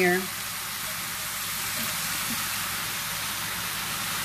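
Pork cutlets and sautéed onions sizzling steadily in a hot cast iron pan.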